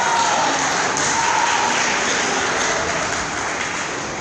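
Spectators cheering on a karate bout: a steady wash of clapping and voices, with a few shouts rising above it.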